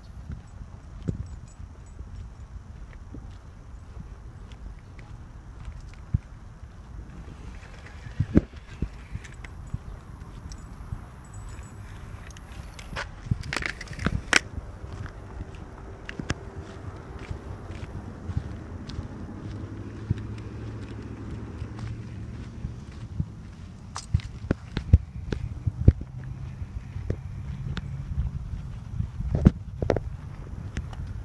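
Footsteps on a concrete sidewalk with scattered clicks and knocks of handling, over a steady low rumble; a brief louder rustle comes about 13 to 14 seconds in.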